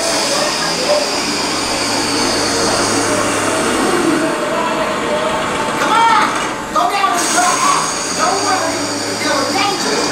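Dark-ride vehicle running steadily through the show building, a continuous mechanical rumble with a hiss over it, along with indistinct voices.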